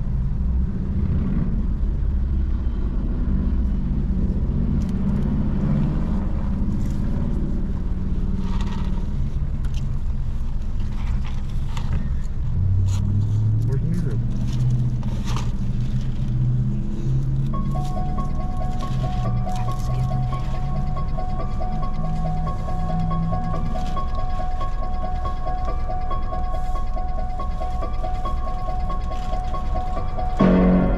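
Car idling at a drive-through window: a steady low engine rumble heard from inside the cabin, with muffled, indistinct voices from the service window. A steady high tone comes in a little past halfway and holds to the end.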